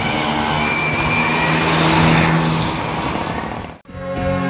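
Road traffic: a motor vehicle passing by, its engine and tyre noise swelling to its loudest about two seconds in and then fading.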